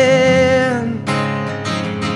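Acoustic guitar strummed under a man's long held sung note, which tails off a little under a second in, leaving the guitar strumming on its own.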